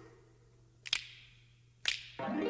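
Sharp clicks in a quiet pause: a quick double click about a second in and a single click near the end, over a faint low hum.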